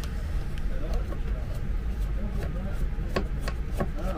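Screwdriver working the screws of a plastic charger case: scattered small clicks and creaks, a few of them sharper, over a steady low rumble.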